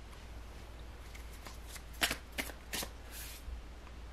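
Tarot deck handled and shuffled by hand: a few sharp card snaps and flicks between two and three seconds in, then a soft swish of cards.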